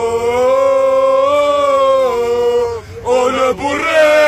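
Male voices chanting a long held 'o' that breaks off near three seconds in, then start a new, more broken line of the chant.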